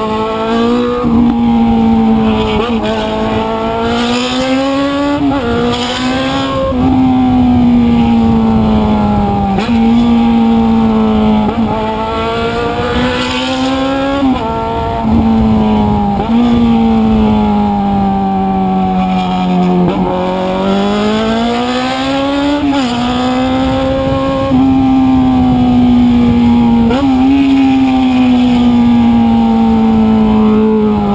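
Motorcycle engine, heard from a handlebar-mounted camera while riding in traffic, with steady wind rush. The revs rise and fall with the throttle, and the pitch drops sharply and climbs again at several quick gear changes. The engine slows down gradually once, about two thirds of the way through.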